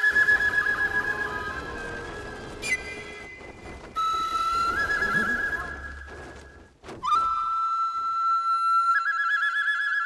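Film-score flute playing long held high notes with fluttering trills, in three phrases. Two brief sudden sounds break in between the phrases, about three seconds and seven seconds in.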